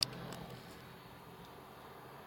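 Faint steady background noise with a low hum inside a parked car's cabin, engine off, with a short click at the very start.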